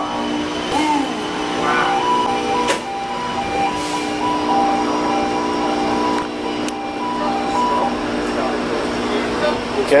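Steady electrical hum of switchgear and machinery in a switchboard room, with an electronic alarm-like tone that switches back and forth between two pitches from about two seconds in until nearly eight seconds. A few faint clicks are heard.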